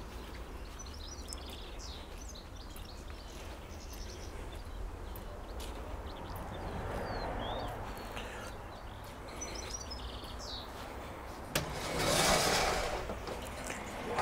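Outdoor garden ambience: a steady low hum of distant traffic that swells a little past the middle, with small birds chirping now and then. Near the end a click and a short rushing scrape as the aluminium greenhouse door is opened.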